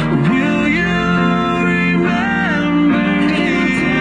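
Background music: a song with a singing voice over guitar, playing steadily.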